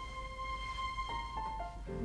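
Soft background music: a long held note, then short notes stepping down in pitch a little after a second in.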